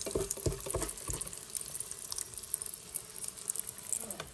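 Breaded cabbage cutlet shallow-frying in oil in an electric skillet: a steady crackle of many small pops, with a few dull knocks in the first second.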